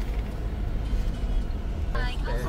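Steady low rumble of engine and road noise inside a moving car's cabin.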